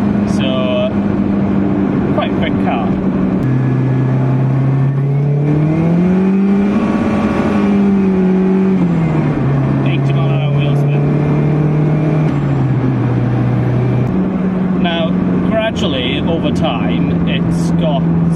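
Saab 900's 16-valve turbocharged four-cylinder engine heard from inside the cabin while driving: a steady engine note that drops about a third of the way in, then climbs in pitch with a rising rush under acceleration, holds, and falls back, before stepping down and up again near the end. The owner calls the car lazy and slow and suspects a slack timing chain has put the valve timing out.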